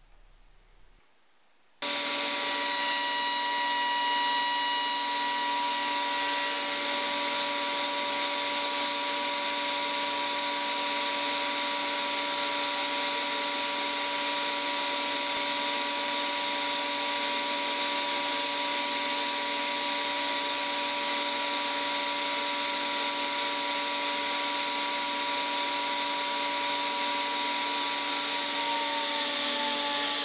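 Workshop machine running steadily, starting about two seconds in: a constant hiss with several fixed, steady tones and no change in load. Near the end one tone sags slightly before the sound fades out.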